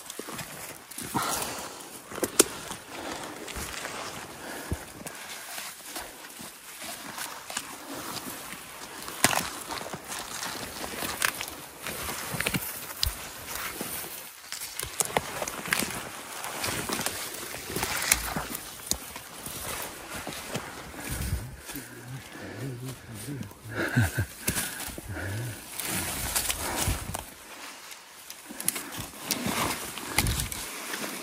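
Pushing on foot through dense spruce undergrowth and deadfall: branches brushing and scraping against clothing and gear, with frequent sharp snaps and cracks of dry twigs and footsteps on brush.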